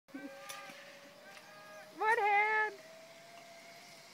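A faint, steady whine from a zipline trolley running along the cable, its pitch creeping slightly upward, with a loud, drawn-out yell from a person about two seconds in that lasts under a second.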